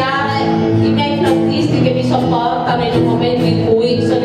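Live acoustic ensemble playing, with guitars and a double bass holding sustained chords and choir voices singing along.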